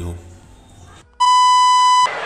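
A single loud electronic beep, one steady high tone held for just under a second, starting suddenly about a second in and cutting off abruptly.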